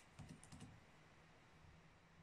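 A few faint computer keyboard keystrokes within the first second.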